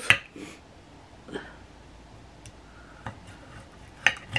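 A few sparse clicks and taps of a knife and fork against a ceramic plate as a pork chop is cut, over quiet room tone.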